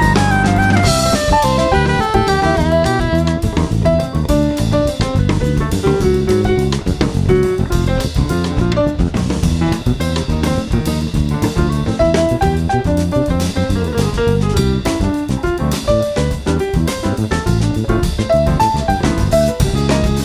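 Instrumental jazz in a Brazilian choro style: drum kit keeping time under a fast, running plucked-string melody line, from a trio of electric bass, saxophone and drums.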